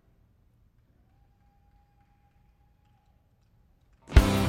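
Near silence, with only a very faint steady tone for about two seconds in the middle.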